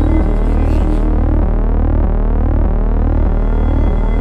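Synthesized logo-sting sound design: a deep, pulsing electronic drone under many overlapping sweeping tones that glide upward.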